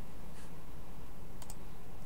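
Steady low hum in the background of the recording, with a few faint clicks, one about halfway through and a pair near the end.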